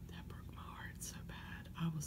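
A woman whispering close to the microphone, breathy and without voice, with sharp 's' sounds, over a faint steady low hum.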